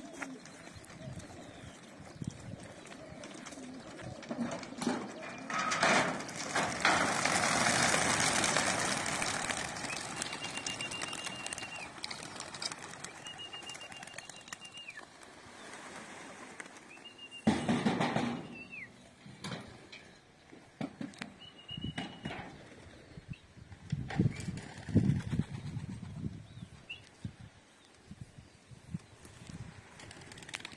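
A flock of young racing pigeons taking off together from a release trailer. A loud rush of many wings flapping starts about six seconds in and lasts several seconds, then fainter, scattered wingbeats follow as the flock circles.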